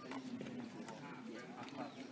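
Faint, indistinct voices of people talking in the background, with a few light clicks.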